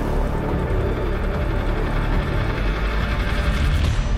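Background soundtrack music with a heavy low end, steady in level.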